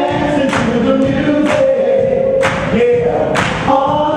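Live soul music: a male vocal group holding long harmony notes over a backing band, with a beat striking about once a second.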